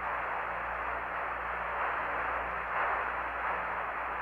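Steady radio static from the Apollo 11 air-to-ground voice link, an even, narrow-band hiss with a faint low hum underneath, heard on the open channel between the crew's landing callouts.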